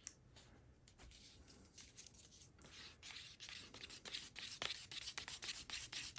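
A wooden stir stick scraping against the inside of a paper cup as thick acrylic pouring paint is stirred. Faint, quick scrapes, getting more frequent and louder in the second half.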